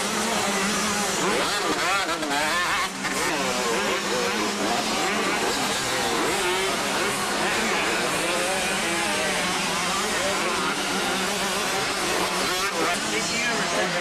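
Motocross bike engines, including a Kawasaki KX250 two-stroke, revving up and down, the pitch rising and falling as the riders accelerate, jump and corner around the dirt track.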